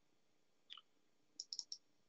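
Faint clicks at a computer, heard through a video-call link, as screen sharing is being set up: one soft click about a third of the way in, then four quick sharp clicks near the end.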